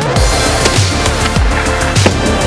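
Electronic background music with a heavy beat and deep bass notes that slide down in pitch, repeating about every half second.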